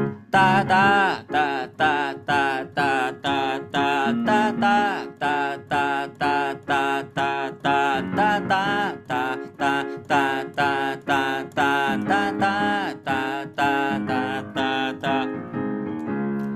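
Keyboard playing a pop chord progression, I–vi–IV–V in C (C, A minor, F, G): repeated chords, about two a second, over held bass notes that change roughly every four seconds.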